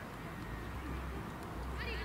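A high-pitched, drawn-out shout rising in pitch near the end, from someone at the soccer match.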